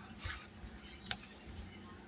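Faint rustling as a sticker book and journal pages are handled, with one sharp click about a second in.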